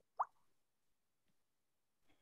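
A single short pop that rises quickly in pitch, about a quarter second in, over near silence.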